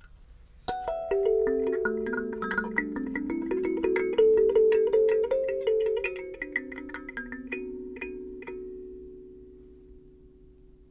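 Kalimba (thumb piano) played by hand: a quick run of plucked metal tines, the notes ringing into one another. It slows to a few last plucks near the end and rings out.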